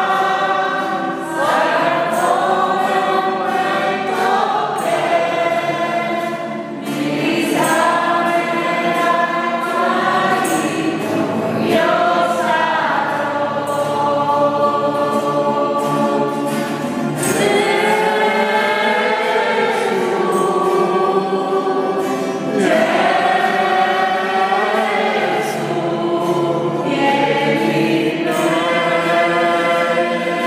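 A congregation singing a worship song together, many voices in long, sustained phrases.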